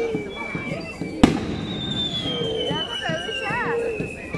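A single sharp firecracker bang about a second in, followed by a long, slowly falling whistle-like tone, over a crowd's chatter and shouts.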